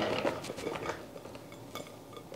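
Sliced zucchini tipped from a glass bowl into a large pot: a light clatter of slices and small clinks that thins out within the first second, then a few faint ticks.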